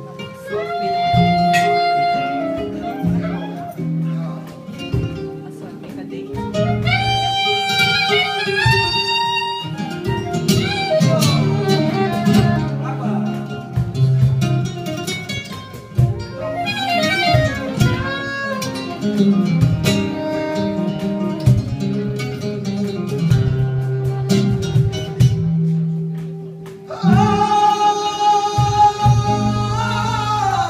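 Live flamenco music: a flamenco guitar plucking and strumming under a soprano saxophone playing long, gliding melodic phrases. Near the end a strong sustained melodic line comes in.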